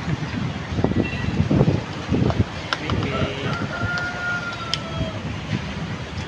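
A single long animal call, held steady for about a second and a half near the middle, over low rustling and a few sharp clicks.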